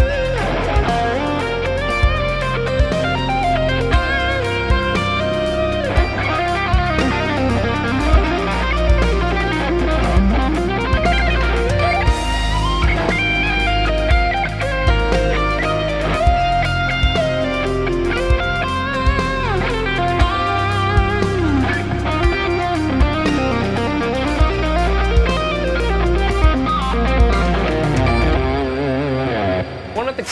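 Les Paul-style electric guitar playing a fast legato lead line that mixes pentatonic and three-note-per-string major-scale runs, with bends and vibrato. It plays over a backing track with bass and a steady beat, and the music stops shortly before the end.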